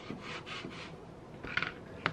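Plastic squeegee rubbed in a few sweeping strokes across laminate film on a sticker sheet, smoothing it down; the loudest scrape comes about a second and a half in.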